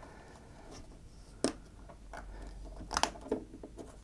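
A few light clicks and taps of a carbon-fibre plate being fitted over a touchscreen and its plastic surround, over soft handling noise. The sharpest click comes about one and a half seconds in, and two more come close together near three seconds.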